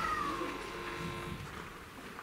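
Live band's held chord dying away, with one high note gliding slowly downward and fading out about a third of the way in.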